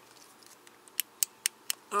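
Flashlight switch clicked repeatedly, about five sharp clicks in the second half, with the light not coming on: its battery has died.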